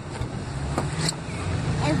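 A child climbing into a car's back seat: rustling with two light knocks about a second in, over a steady low rumble.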